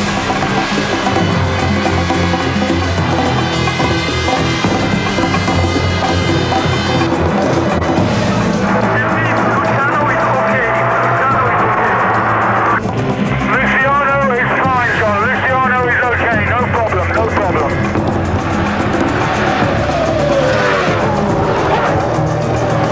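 Music over Formula 1 V10 engines at high revs: one car's pitch climbs steadily as it accelerates and cuts off abruptly about 13 seconds in, then several cars sweep past with pitch sliding down and up through gear changes.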